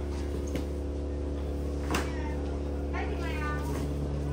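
A cat meowing once, a high-pitched call that bends downward in pitch near the end, over a steady low mechanical hum. There is a single sharp click about two seconds in.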